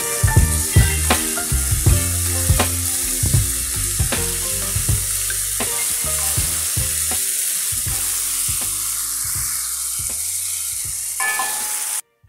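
Beef strips in gravy sizzling in a hot wok while a wooden spoon stirs them, a steady frying hiss. Background music with a beat plays underneath.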